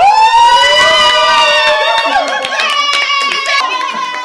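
Loud, long high-pitched screaming of excited delight, held for about two seconds, with people clapping from about halfway through.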